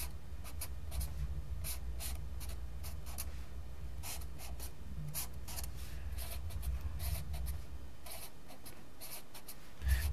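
Sharpie felt-tip marker drawing on a stack of paper: many short strokes as lines and crossing arrows are drawn one after another. A low steady hum lies underneath.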